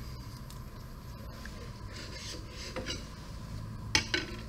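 Light handling of laboratory glassware on a bench over a steady low room hum, with a sharp glassy knock near the end.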